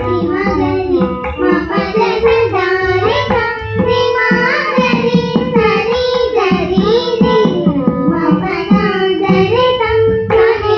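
Girls singing together in a Carnatic-style devotional song, with gliding melodic lines, accompanied by a two-headed barrel drum played by hand over a steady held drone.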